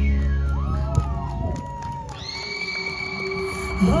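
A live rock band's song ends, its last chord dying away under a falling sweep in the first second, and the audience cheers and whoops. A steady high tone holds through the second half, and the band kicks back in right at the end.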